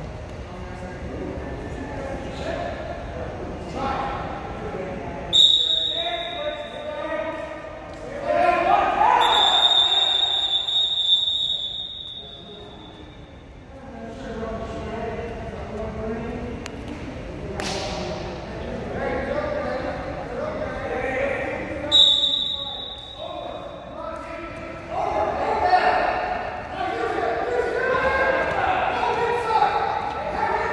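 Voices shouting and calling out, echoing in a school gym. A referee's whistle blows briefly about five seconds in, is held for two or three seconds near ten seconds, and blows briefly again near twenty-two seconds. A single sharp thud comes near eighteen seconds.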